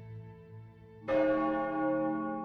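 A single bell struck once about a second in, its many tones ringing on and slowly fading.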